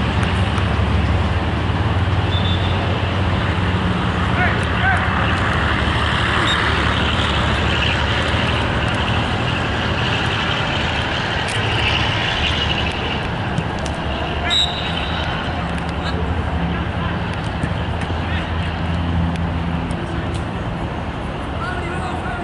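Open-air ambience of an amateur football match: players' shouts and calls across the pitch over a steady low rumble, with a brief sharp sound about fifteen seconds in.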